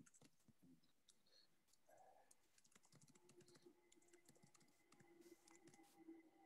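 Faint typing on a computer keyboard: scattered soft key clicks, heard through a video-call microphone. A faint steady hum comes in about halfway through.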